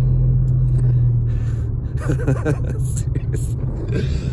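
Car engine and road rumble heard inside the cabin while driving, with a steady low hum that drops away about a second in. A man's voice comes in about halfway, and he laughs near the end.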